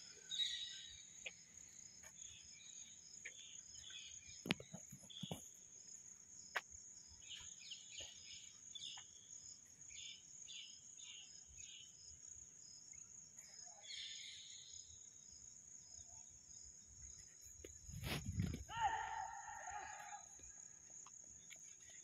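Faint outdoor ambience dominated by a steady, high-pitched insect drone, with scattered short chirps. A low thump comes near the end, followed by a short call.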